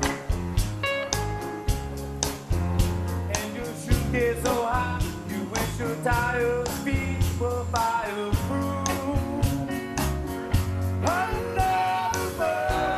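Live band playing a rock song with electric guitar, piano, bass and drums on a steady beat; a male voice starts singing the melody about four seconds in.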